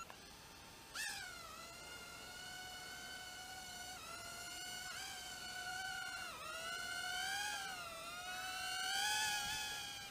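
Cheerson CX-10D nano quadcopter's four tiny coreless motors and propellers whining as it lifts off about a second in, then flying, the pitch dipping and rising again and again as the throttle changes and growing louder near the end.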